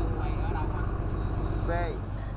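A cargo boat's engine running with a steady low drone, with a man's faint voice talking over it.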